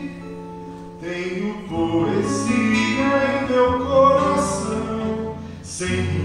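Live acoustic guitars accompanying a man singing in Portuguese; after a quieter held chord, the voice comes in about a second in.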